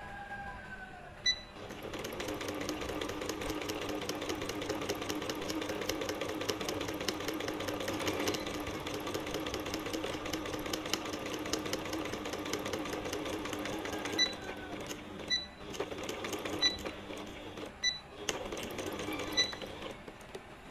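Electric sewing machine stitching a seam in a strip of T-shirt fabric: a steady, fast run of needle strokes for about twelve seconds, then several short stop-start runs with brief high beeps between them.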